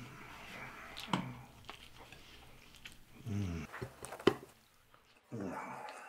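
A man eating pizza greedily, with wet chewing and biting sounds and several low grunts between bites; the longest is a falling groan about three seconds in. A sharp click from the mouth comes about four seconds in.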